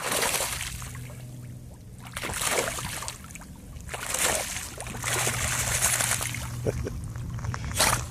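A swimming dog splashing and sloshing the water as it ducks its head under, in repeated surges every second or two, over a steady low hum.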